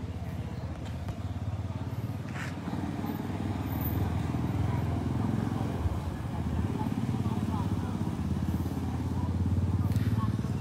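A motorcycle engine running close by, getting louder over the first few seconds and then holding steady.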